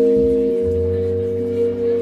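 Live band playing long, steady held chord notes, with a low bass note joining about half a second in and the chord shifting again later.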